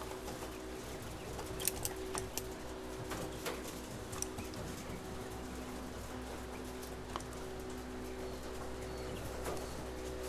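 A steady machine hum with several faint clicks and taps scattered through it.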